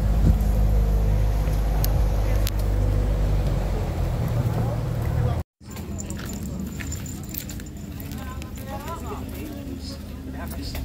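Boat engine running with a steady low drone for about five and a half seconds, then stopping abruptly. After that a quieter background hum remains, with brief voices and small clicks.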